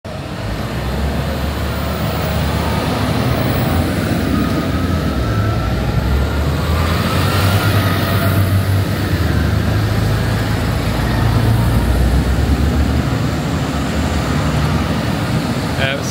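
Diesel engines of large farm tractors running as the tractors drive past one after another, a steady low rumble.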